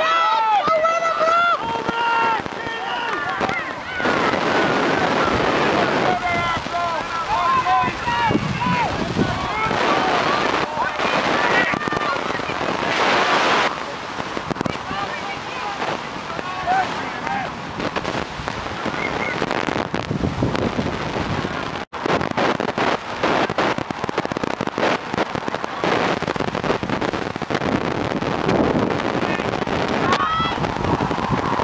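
Shouts and calls from players and spectators at a youth rugby match, high-pitched yells in the first few seconds and scattered calls after, over steady wind noise on the microphone. The sound drops out for an instant about twenty-two seconds in.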